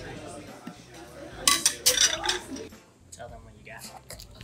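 Tableware clinking against a stainless steel hot pot as food is put in with chopsticks and a plate: a quick cluster of sharp, ringing clinks for about a second, starting a second and a half in, over low background chatter.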